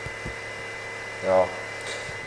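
Mercedes W211 Airmatic air-suspension compressor running with a steady hum during a pressure test. It is barely building pressure, stalling just under 12 bar instead of the 14 bar it should reach, a sign of a worn compressor that needs replacing.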